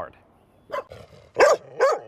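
Dogs barking: a short bark about three-quarters of a second in, then two loud barks in quick succession in the second half.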